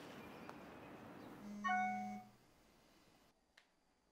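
Samsung smartphone sounding a missed-call notification: a short buzz with a chime of several steady tones about a second and a half in, lasting under a second, over a steady background hiss.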